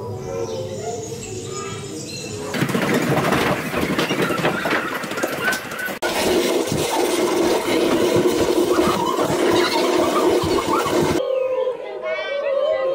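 Hubbub of a group of adults and children in a hall: mixed chatter, shuffling, chairs and footsteps on a wooden floor, with high squeals, changing abruptly a few times.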